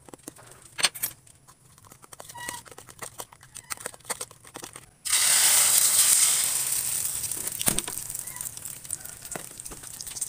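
Light scattered clicks and knocks, then about halfway through a sudden loud sizzle as beaten egg with onion and tomato is poured into hot oil in a wok. The sizzle slowly fades.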